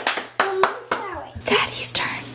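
A man clapping his hands several times, applause for a child, a string of sharp claps at uneven spacing.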